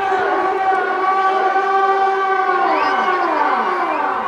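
A siren-like wail: one loud pitched tone holds steady, then slides down in pitch about three seconds in.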